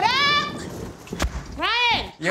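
A woman's loud, high-pitched whooping shouts: one right at the start and a second near the end that rises and falls in pitch.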